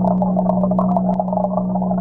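Steady hum of an aquarium pump with warbling bubbling and scattered small clicks, heard underwater through a camera submerged in the tank.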